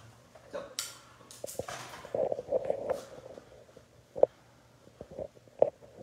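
Hands and tools working wet hair on a mannequin head: soft rustling and handling noises through the first half, then a few sharp clicks, the loudest about four seconds in and another near the end.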